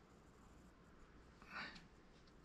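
Near silence: faint room tone, with one brief soft scrape about a second and a half in.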